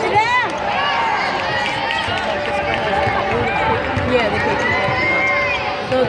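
Basketball shoes squeaking on a hardwood court as players run, in short repeated squeals, over the voices of the arena crowd.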